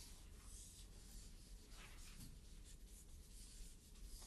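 Faint scratching of chalk on a chalkboard, in several short strokes.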